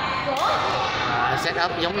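Voices speaking, with a sharp knock about a third of a second in and a few more quick knocks near the end.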